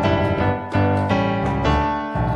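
Yamaha digital stage piano playing a run of sustained chords alone, a lead-in before the vocal enters.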